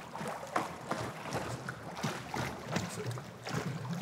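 Pool water lapping and splashing in small irregular splashes around a swimmer sculling face-down with a snorkel.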